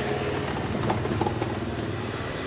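A steady low engine hum, like a motor idling, with a few faint light knocks over it.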